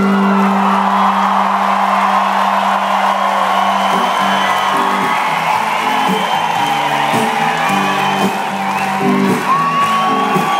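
Live band music played loud over a festival PA, with a big crowd whooping and cheering over it. The low notes hold steady at first, then break into a repeating pattern of short notes about four seconds in.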